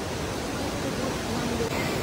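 A river rushing over rocks: a steady, even rush of water noise, with a faint voice late on.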